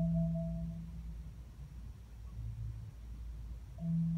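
Marimba notes: a low note and a higher one ring on and fade away within the first second, a faint low note sounds softly in the middle of the pause, and a new low note comes in just before the end.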